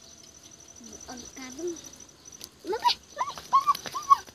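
A dog whimpering and yelping: a run of short, high, rising-and-falling cries that starts about halfway through and comes quickly, several of them loud.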